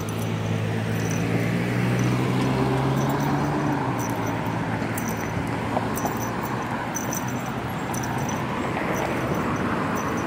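Street traffic at an intersection: a nearby vehicle's engine hums steadily for the first four seconds or so, over the continuous noise of cars driving past.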